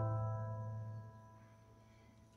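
Acoustic guitar chord ringing out and dying away: the last chord of a song. It fades to near silence about a second in.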